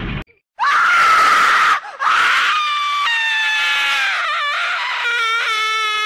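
Two loud, high-pitched human screams. The first is short, starting about half a second in. The second, longer one slowly falls in pitch and wavers near the end.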